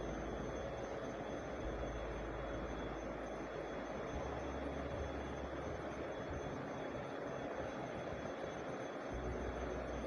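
Steady, even rushing noise from masala cooking in oil in a steel pan on a gas stove.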